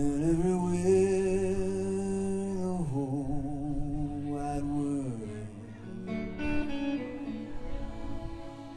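Live band music with a strummed acoustic guitar under long, held wordless vocal notes that step down in pitch a few times.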